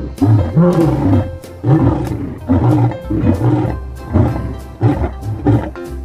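Male lion roaring: a run of short, deep roars, about seven in six seconds, over background music.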